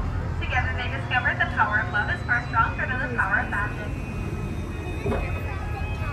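Indistinct talking for the first three or four seconds over a steady low hum from the ride boat, which carries on alone near the end.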